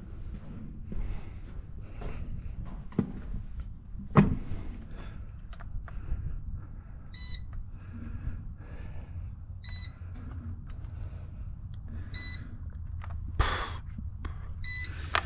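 Radio transmitter giving a short electronic beep about every two and a half seconds, starting about seven seconds in: its warning that it has lost contact with the helicopter. Low handling noise runs underneath, with a sharp knock about four seconds in.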